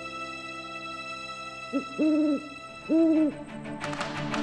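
Owl hooting three times, a short hoot then two longer ones about a second apart, over a steady sustained music drone.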